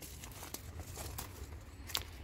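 Faint footsteps and rustling through grass and dry vegetation, with a low rumble of wind or camera handling and a sharper click just before the end.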